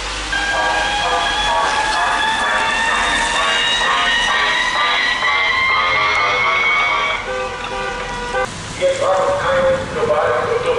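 Cars passing on a wet street, with amplified voice or music from the convoy and a long tone that slowly rises in pitch for about seven seconds before stopping.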